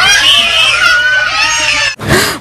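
A small child screaming and wailing, one long high cry that wavers up and down in pitch, over a low steady hum.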